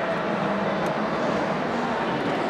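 Steady background noise of a large, busy exhibition hall, with indistinct distant voices.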